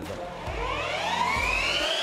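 Electric motors of several MotoE racing bikes whining as they accelerate hard, the pitch rising steadily from about half a second in.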